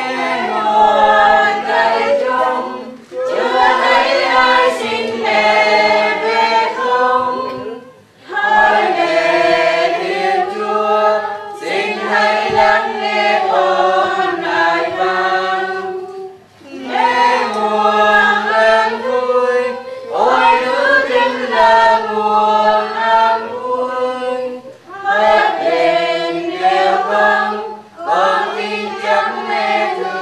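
A group of voices singing a Catholic funeral hymn in Vietnamese, unaccompanied, in sustained phrases of a few seconds each with short breaks for breath between them.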